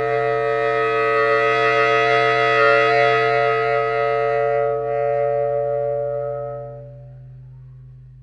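Baritone saxophone sustaining a multiphonic: several tones sounding at once in one held chord. It swells from soft to loud and fades away again over about seven seconds.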